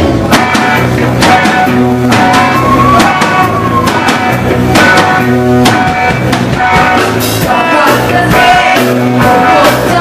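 Live rock band playing: drum kit and a Les Paul-style electric guitar, the full band coming in on a drum hit right at the start.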